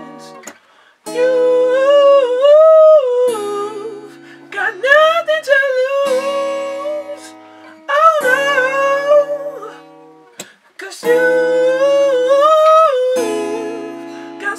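Acoustic guitar strumming chords under a wordless sung melody. The voice comes in about four phrases of two to three seconds each, with short breaks between them.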